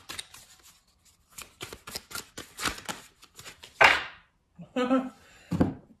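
Tarot cards being shuffled and handled by hand: a quick run of soft card flicks and rustles, then a louder swish about four seconds in. A short laugh near the end.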